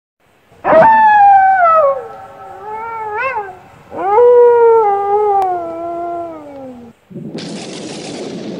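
Canine howling: two long howls falling in pitch, with a shorter wavering call between them. Near the end a sudden crash of thunder starts and runs on as a steady rush.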